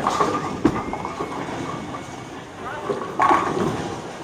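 A bowling ball lands on the wooden lane with a knock about half a second in and rolls with a steady rumble. It crashes into the pins about three seconds in.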